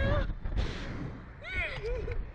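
Wind rushing and buffeting on the microphone of a camera mounted on a Slingshot ride as it flings its riders through the air, a heavy low rumble. A rider's cry trails off just after the start, and another rider's cry comes about one and a half seconds in.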